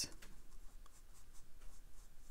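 A few faint scratchy strokes of a round watercolor brush dabbing paint onto cold-press cotton watercolor paper.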